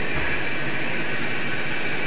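Steady background noise: an even hiss with a few faint steady high tones and no distinct events.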